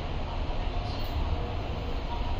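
Steady low rumble of background noise, with no speech over it.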